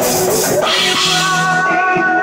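Live rock band playing loud, with electric guitar and drums, and held notes ringing from about a second in.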